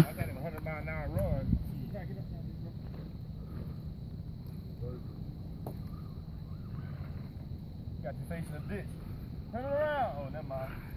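Faint, distant men's voices talking in snatches, over a steady low background rumble and a thin, steady high tone.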